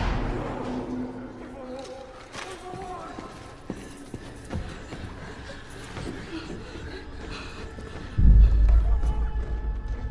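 Film soundtrack: tense, low music with faint voices under it, then a deep, loud low boom a little after eight seconds in.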